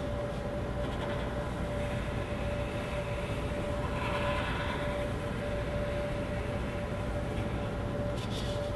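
Steady room hum and rumble with a constant faint tone, under faint strokes of a black felt-tip marker tracing lines on paper, a little brighter about two seconds in and again around four seconds in.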